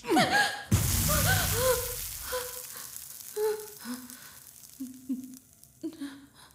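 A woman whimpering and sobbing in pain after a blow to the face, the cries growing fainter and lower towards the end. A hiss comes in sharply under the first cries and fades away over the first couple of seconds.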